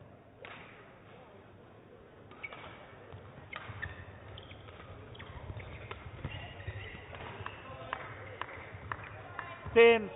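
Badminton rally: sharp racket hits on the shuttlecock from the serve onward, more frequent as the rally goes on, with shoes squeaking on the court. Near the end a loud man's shout of "Oh" as the point is won.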